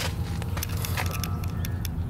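Low steady rumble like an idling engine, with a few light sharp clicks scattered through it.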